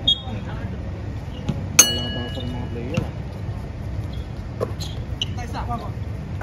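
A single sharp metallic clang about two seconds in, ringing on with a clear note for about a second. It sits over steady court background noise with a few scattered knocks and voices.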